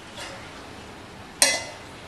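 A metal spoon stirring vegetables in a granite-coated pot, with one sharp, briefly ringing clink of spoon on pot about one and a half seconds in.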